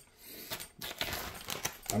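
A few faint, scattered clicks and light knocks of small objects being handled, most likely as the crushed peanut butter cookie is brought out.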